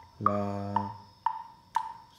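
Metronome clicking steadily twice a second, four clicks in all, the first pitched a little higher as the downbeat of the bar. Over the first click a man sings the solfège syllable "la" as one held note.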